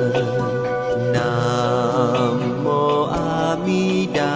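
Buddhist devotional chant sung to music: a sustained, wavering sung melody over a steady low accompaniment.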